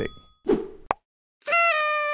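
Short comic sound effects: a quick pop just before the first second, then a clean, held electronic tone with a bright, buzzy edge that dips in pitch as it ends.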